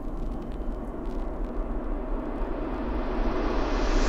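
A white-noise riser in a lo-fi track: a hiss that grows steadily brighter over about four seconds above a steady low bass, then cuts off suddenly at the end.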